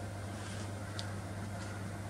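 Steady low hum with faint hiss: workshop room tone, with one tiny tick about a second in.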